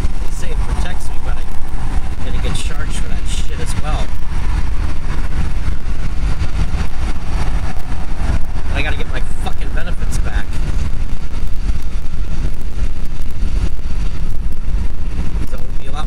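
Steady, loud low rumble of a car's tyres and engine at freeway speed, heard from inside the cabin.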